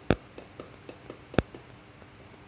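Two sharp clicks about a second and a quarter apart, with fainter ticks between them, from the clock-pulse switch on a shift register trainer board being pressed, each press clocking the data one step through the register.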